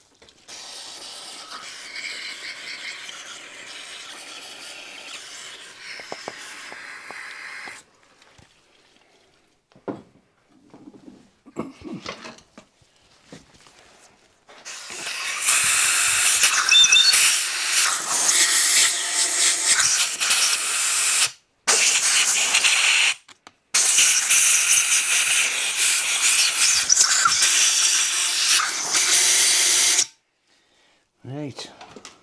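Aerosol spray can hissing in a steady stream for about eight seconds, then a few handling knocks. About halfway through, a compressed-air blow gun starts blowing in long loud blasts, broken twice by short pauses.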